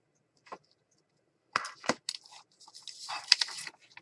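Hard plastic clicks as a clear acrylic stamp block is pressed down and lifted off paper, two sharp clacks in quick succession, followed by a second or so of paper rustling as a freshly stamped paper bookmark is picked up.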